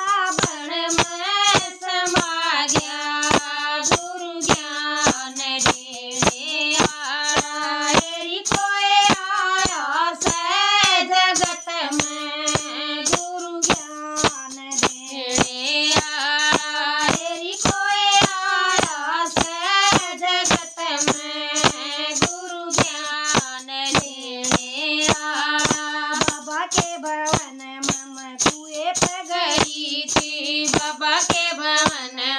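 Two women singing a Hindi devotional bhajan together, keeping time with handheld percussion struck or shaken about two to three times a second.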